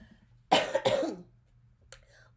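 A woman coughing, two quick coughs about half a second in.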